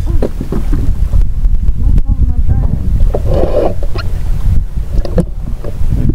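Wind buffeting the microphone: a loud, steady low rumble, with faint voices in the background.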